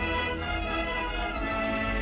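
Orchestral film score with violins playing held notes, over a steady low hum and with the dull, narrow sound of an old film soundtrack.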